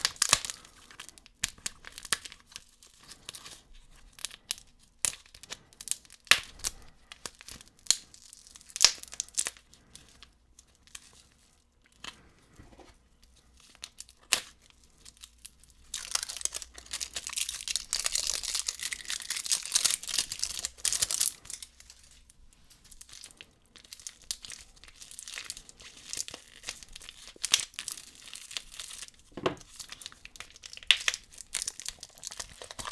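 Crinkling and tearing of the clear plastic packaging on a lollipop-and-sherbet-powder candy cup as it is picked open by hand: scattered crackles and clicks, with a few seconds of continuous tearing and crinkling a little past halfway through.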